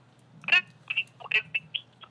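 Speech only: a man's voice saying a few short words, with the thin, narrow sound of a voice carried over a phone or call line.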